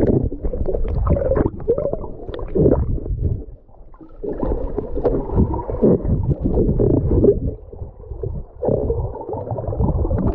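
Muffled gurgling and bubbling of churned sea water heard underwater, with a brief quieter lull a few seconds in and another near the end.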